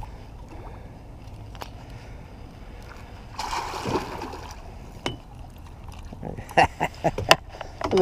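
A hooked catfish thrashing at the surface beside a boat, giving one splash of water about halfway through. A few sharp clicks and knocks follow.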